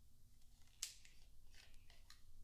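One sharp plastic click a little under a second in, then a few faint ticks, as a small plastic bottle of lactic acid is handled and its cap worked open; otherwise near silence.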